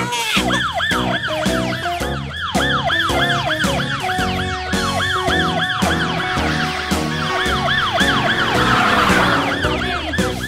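Police-car siren sound effect, a fast rising-and-falling tone repeating about three times a second, over background music.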